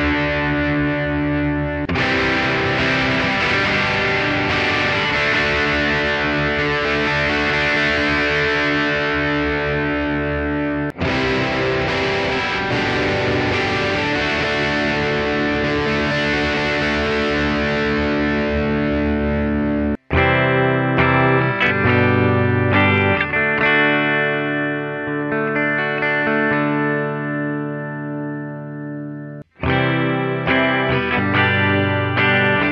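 Distorted electric guitar played through a Blackstar Amplug 2 Fly headphone amp on its lead channel, the tone shifting as the ISF control goes from 1 to 10. About twenty seconds in, it cuts to a cleaner tone with the chorus effect on, notes ringing out and fading.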